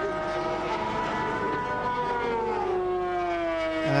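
Racing sidecar outfit's two-stroke engine running at high revs, a steady high-pitched note that falls in pitch from about two and a half seconds in.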